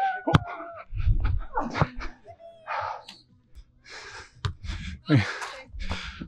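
Beach volleyball play heard through a wind-muffled action-camera mic: a couple of sharp smacks of the ball, brief scattered voices and heavy breaths.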